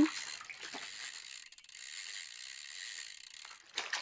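Fishing reel cranked fast to wind in a heavily loaded line, a faint, steady mechanical whir that stops near the end.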